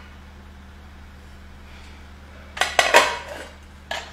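Plates and cutlery clattering on a glass dining table: a quick run of clinks about two and a half seconds in, the loudest part, then one more knock near the end.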